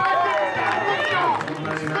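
Several people shouting and talking at once, their voices overlapping, with "good job" called out near the end.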